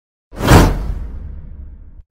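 Whoosh sound effect with a deep rumble: it swells in suddenly about a third of a second in, peaks quickly, and fades away slowly.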